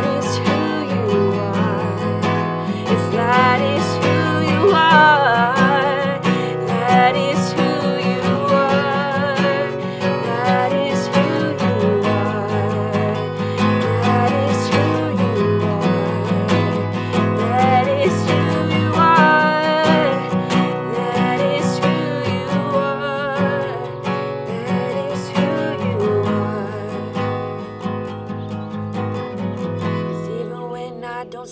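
A woman singing a slow song with vibrato on held notes, accompanying herself on a strummed acoustic guitar; it grows quieter over the last few seconds.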